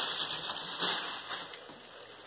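Thin plastic shoe bag crinkling and rustling as it is handled, in a few short surges that fade near the end.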